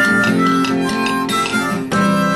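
Harmonica playing held notes over a strummed acoustic guitar.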